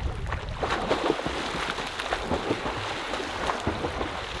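Water splashing and churning in irregular bursts from a swimmer's freestyle arm strokes and kick in a pool lane.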